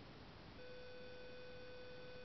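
A faint, steady electronic tone with evenly spaced overtones comes in about half a second in over low hiss, and holds one pitch.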